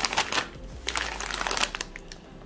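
Clear plastic bags of nut pieces crinkling and rustling as a hand sets one bag down and picks up another, in a run of irregular crackles.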